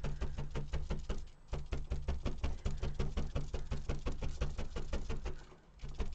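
Prym multi-needle felting tool stabbing rapidly into wool tops on a felting mat, a fast, even run of soft knocks about eight a second. It breaks briefly about a second and a half in and stops just before the end.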